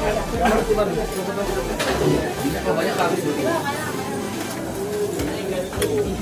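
Indistinct chatter of several people talking over one another, with a few brief clicks.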